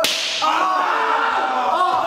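A sharp hand slap on a person's backside, then a long, loud, wavering cry from a voice starting about half a second later.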